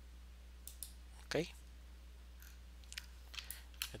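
Several computer mouse clicks, spaced out and coming more often in the second half, over a steady low electrical hum.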